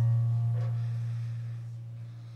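Keyboard music: a deep bass note struck with a chord above it rings and slowly fades.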